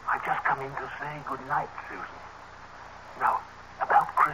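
A man and a young girl imitating monkey chatter with their voices, in short, quick bursts of pitched vocal noise: a cluster in the first second and a half, then a couple more near the end.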